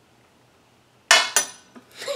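Two sharp clinks a quarter second apart, about a second in, from spoons handled against the glass tabletop.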